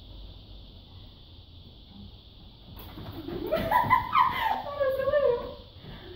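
A dog's drawn-out, wavering whining call, starting about halfway through and lasting a couple of seconds, its pitch sliding up and down and dropping at the end.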